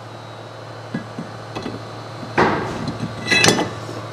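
Metal clanks and clinks from a steel brake rotor being handled: a few light clicks, a louder clank about two and a half seconds in, then a ringing metallic clink near the end.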